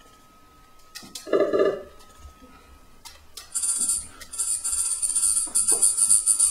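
Electronic music from a wearable beatjazz controller starting up: a short pitched note about a second in, then a fast, shimmering hi-hat-like pattern that comes in a little past halfway and keeps going.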